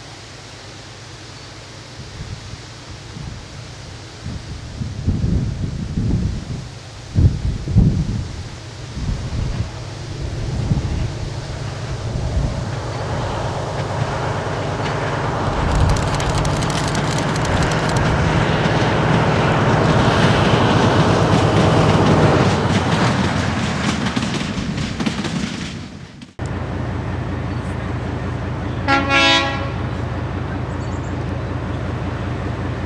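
Narrow-gauge diesel locomotive hauling coaches, its engine growing louder as it approaches and passes, loudest about twenty seconds in, with a few heavy low rumbles before that. After a sudden cut, a diesel locomotive runs steadily at a station, and its horn gives a short toot near the end.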